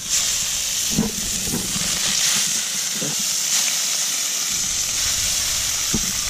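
Catfish fillets frying skin side down on a hot flat-top barbecue plate: a steady, even sizzle that starts abruptly.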